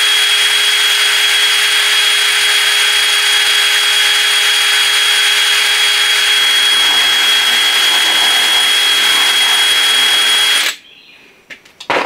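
Cordless DeWalt drill running steadily with a high whine, boring a half-inch hole through the middle of a PVC cap held in a vise. It stops suddenly about a second before the end.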